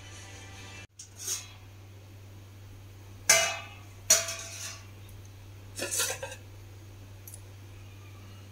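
Stainless-steel cookware being handled: four short metallic clanks, each ringing briefly, the loudest about three seconds in. A steady low hum runs underneath, and faint background music ends about a second in.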